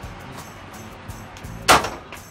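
Folding metal RV entry steps swinging down from a fifth wheel's doorway and landing with a single loud clank near the end.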